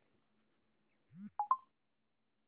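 Near silence, then about a second in a short low rising sound followed by two quick electronic beeps at different pitches, like phone keypad tones.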